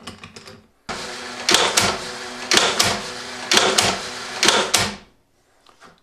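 Cordless drill running steadily for about four seconds, turning a rubber-band-powered rack-and-pinion crossbow mechanism. Sharp double snaps come about once a second, four times, as each rotation cocks the bands, snaps the string into the lock and releases the shot.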